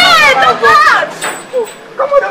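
People's voices speaking or calling out, high-pitched and loudest in the first second, softer after.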